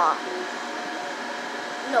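A blow dryer running steadily, blowing on freshly done nails to dry them.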